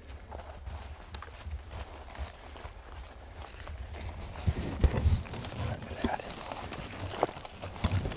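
Footsteps crunching through dry fallen leaves and brush, with a few louder thumps and snaps about halfway through and near the end, over a low rumble of camera handling.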